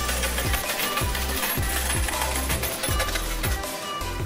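Intro music with a kick-drum beat about twice a second, under a continuous jingle of clinking coins like a slot-machine payout.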